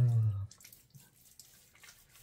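A man's short voiced 'uhh', falling in pitch, in the first half second, then only faint small clicks and taps.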